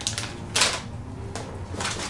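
Plastic soft-bait packaging crinkling and rustling as lure packs are handled, in a few short, crackly bursts, the strongest about half a second in.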